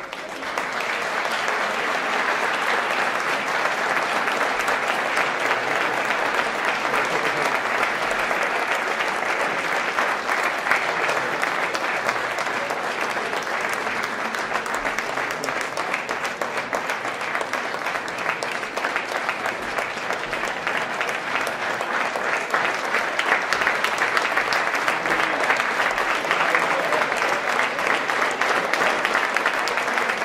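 Audience applauding in a hall, breaking out suddenly and then holding steady.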